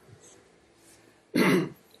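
A man clears his throat once, briefly, a little over a second in.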